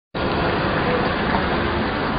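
Steady street traffic noise: vehicle engines running, with a faint murmur of activity.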